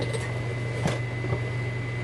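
Steady low electrical hum with a thin high whine from a running kitchen appliance, broken by a few light knocks.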